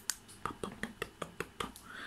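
A string of sharp, light clicks at uneven intervals, several a second.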